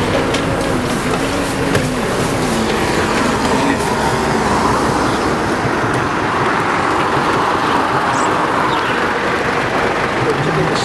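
A bus's engine running close by, its note wavering up and down in the first few seconds, under a loud, steady rush of road noise.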